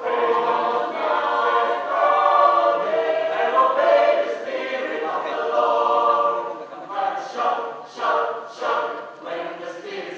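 A choir singing unaccompanied, holding long notes, with the phrases turning shorter and more clipped after about seven seconds.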